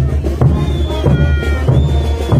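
A marching brass band plays a parade dance tune over a steady pulsing bass drum beat. About half a second in, a high note starts and is held past the end.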